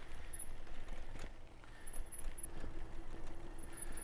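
RadMission 1 e-bike rolling over a crushed-granite path: the tyres crunch on the gravel and the bike, with no suspension to soak up the bumps, rattles and clicks in quick irregular ticks over a low rumble.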